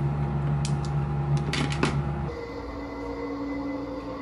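A steady machine hum with several light clicks and rattles of cables and plugs being handled and packed away. About two seconds in, it gives way to a different, quieter steady hum.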